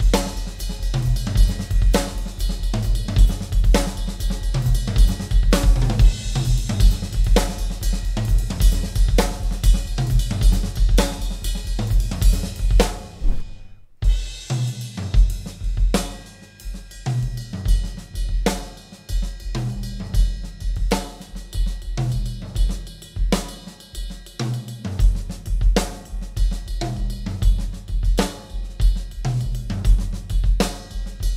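Solo drum kit playing a syncopated quasi-Latin groove: ride cymbal and bell over a tom pattern, with snare and a steady bass drum pulse. The ride is played with the left hand. The playing breaks off briefly about fourteen seconds in, then picks up again.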